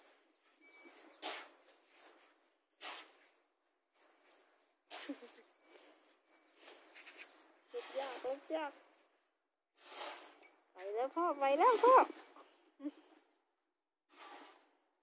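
An elephant calf scuffs and thrashes in dry dirt, making short scattered rustles and scrapes. Twice, about eight seconds in and again near eleven to twelve seconds, there is a brief high, wavering vocal sound, the second one the loudest.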